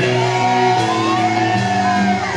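A woman singing and shouting into a microphone over a live rock band, loud and continuous.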